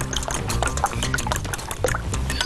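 A fork beating raw eggs in a glass bowl: rapid, irregular clicks of the fork against the glass, with the liquid sloshing.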